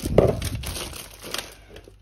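Groceries being unpacked: a thin plastic shopping bag crinkling, with a knock of an item on the counter at the start. It is loudest in the first half second and then fades into a few small clicks and rustles.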